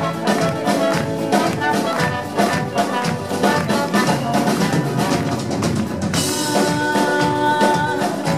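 A live band playing, with a steady drum beat under the melody. A long held note comes in about six seconds in.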